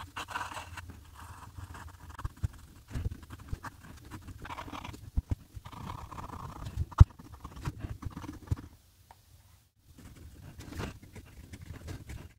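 Fountain pen nib scratching across paper in short strokes and scribbles, with a few sharp taps, the loudest about seven seconds in.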